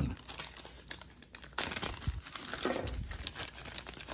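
Clear plastic wrapper on a card crinkling as hands handle it and tear it open, a string of irregular crackles.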